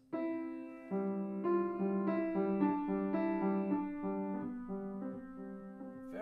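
Grand piano: a C struck and held, then from about a second in a simple, homespun melody played slowly over the held C, a new note roughly every half second.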